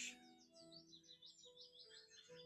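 Faint background music of sustained low notes, with high, rapid warbling birdsong twittering over it.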